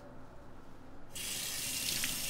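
Bathroom sink tap turned on about a second in, water then running steadily into the basin.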